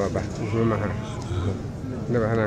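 An elderly man speaking, his voice wavering in pitch.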